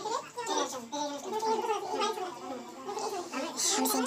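People's voices talking, with no words made out.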